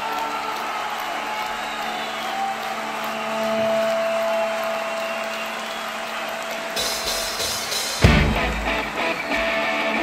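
Live rock band starting a song: a quieter stretch of amplified guitar with held steady tones, then the sound opens up about seven seconds in and the full band with drums comes in on a loud hit about a second later.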